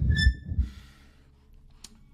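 A man's heavy sigh close to the microphone: a loud low rumble of breath on the mic in the first second, trailing into an airy hiss. A brief high beep-like tone comes near the start, and a single click near the end.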